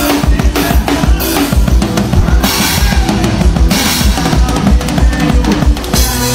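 Acoustic drum kit played fast and hard, with rapid bass drum strokes, snare hits and crash cymbals about halfway through, over a band's steady bass and other instruments.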